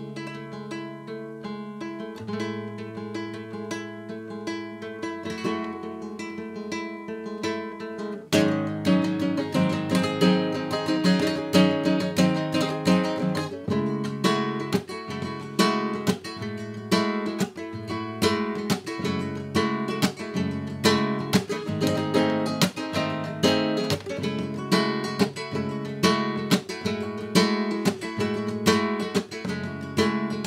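Flamenco guitar with a capo, played solo. It starts with softer picked notes, then about eight seconds in it turns louder, strummed in a steady rumba rhythm with sharp, regular strokes.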